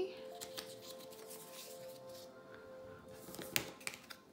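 Soft background music holding long steady notes, with light rustles and a sharp click about three and a half seconds in as a stack of tarot cards is picked up from a wooden table.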